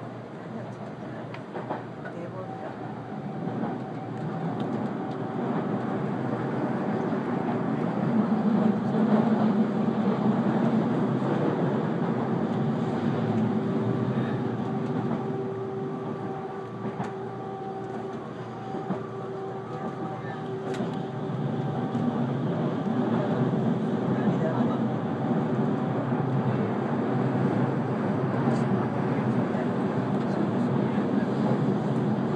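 Cabin noise of a JR Central 373 series electric train running along the line: a steady rumble of wheels on rail with a faint steady motor whine. It grows louder over the first several seconds, then holds.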